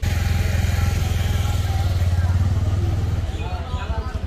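A motor vehicle engine running steadily close by, a low, rapid pulsing hum that eases a little after about three seconds.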